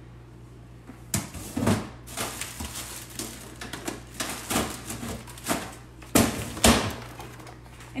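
Off-camera kitchen handling noises: a string of knocks, clicks and rustles as items are fetched and set down, with two sharper knocks near the end.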